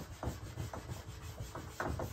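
A handheld eraser scrubbing back and forth across a whiteboard in a run of short, quick rubbing strokes.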